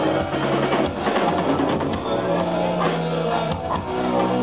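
Live rock band playing, with electric guitars, bass and a drum kit.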